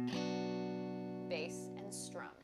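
A Fender Stratocaster electric guitar plays a B minor chord in a bass-note-then-strum pattern. The bass note is already ringing, and a strum comes just after the start. The chord then rings on, slowly fading.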